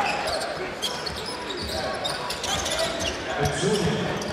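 Basketball bouncing on a hardwood court in a crowded indoor arena, with a steady murmur of the crowd behind it.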